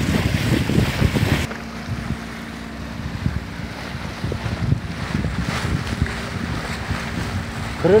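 Wind buffeting the microphone over water rushing along a sailboat's hull. About a second and a half in, it drops abruptly to a quieter wash of wind and water with a faint steady hum underneath.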